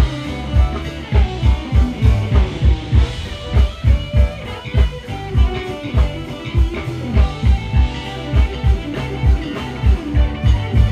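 A live band playing an upbeat groove through a PA: a steady kick drum about twice a second under bass, electric guitar and keyboards.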